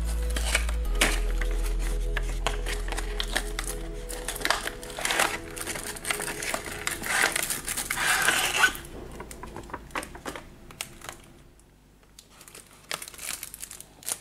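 Crinkling and rustling of a clear plastic blister tray and cellophane wrapping as they are handled and slid out of a cardboard box, busiest about eight seconds in, with a short lull near the end. Soft background music runs under the first half and fades out.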